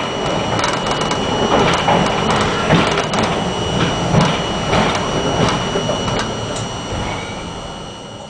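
R42 subway car running through a tunnel, its wheels clicking over rail joints about every two-thirds of a second over a steady rumble, with a constant high-pitched tone.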